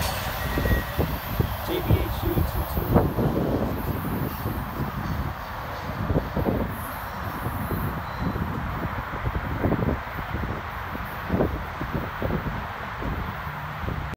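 Freight train's last intermodal well cars rolling away on the rails, the rumble receding into the distance, with uneven wind buffeting on the microphone.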